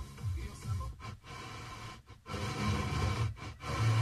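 Car FM radio being tuned up the band: snatches of music from one station after another, broken by brief mutes as the tuner steps to the next frequency.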